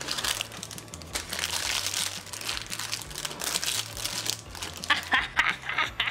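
Packaging crinkling and rustling as it is handled by hand.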